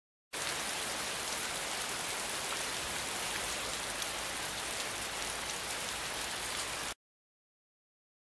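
Steady, heavy rain falling, as a sound effect, with a dense patter of drops. It starts abruptly and cuts off suddenly about a second before the end, leaving dead silence.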